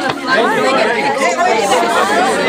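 A group of people laughing and talking over one another.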